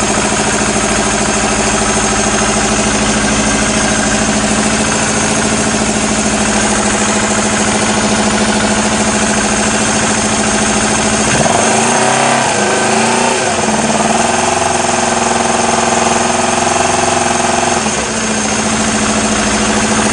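Air-cooled twin-cylinder motorcycle engine running steadily at idle while warming up, its helical camshaft set to minimum duration like a standard cam. About halfway through, its note changes for several seconds and then settles back.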